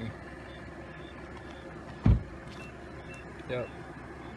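A single short, dull thump about two seconds in, over a steady low hum.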